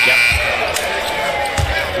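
Arena shot-clock buzzer, a steady tone that cuts off about a third of a second in, signalling a shot-clock violation. A basketball is then dribbled on the hardwood court, with thumps near the start and again around a second and a half in.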